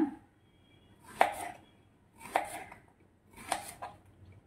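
Kitchen knife slicing a peeled raw plantain into thick rounds on a wooden cutting board: three cuts about a second apart, each a short crunch opening with a sharp tap.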